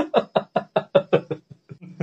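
A man laughing in a quick run of short 'ha' bursts, about five a second, that fade out after about a second and a half.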